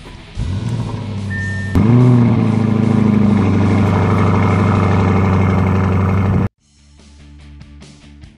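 Lamborghini Urus's 4.0-litre twin-turbo V8 starting up: a first rise in sound about a third of a second in, then the engine catches with a short rev flare just under two seconds in and settles into a steady idle, which cuts off sharply about six and a half seconds in.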